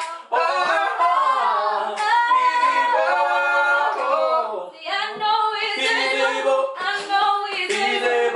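Unaccompanied gospel singing, with long held notes that slide up and down in pitch.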